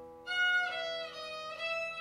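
Violin playing a slow, quiet melodic phrase of single bowed notes, entering about a quarter of a second in after a brief lull.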